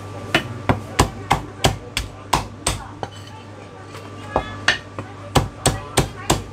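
Heavy cleaver chopping marinated duck on a round wooden chopping block: sharp, evenly spaced strokes about three a second, a pause of a little over a second around the middle, then more strokes.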